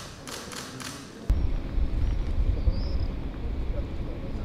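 A few sharp clicks in a quiet room. Then, about a second in, a sudden change to a steady low rumble of wind buffeting the microphone outdoors.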